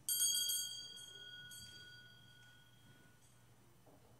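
A small bell rung several times in quick succession and once more about a second and a half in, its clear tone dying away over about three seconds.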